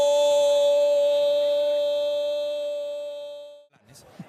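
A Spanish-language football commentator's drawn-out goal cry, 'Gooool', held on one steady pitch for over three seconds and fading out just before the end.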